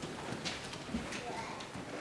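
A congregation getting to its feet: scattered shuffling, footsteps and light wooden knocks from the pews.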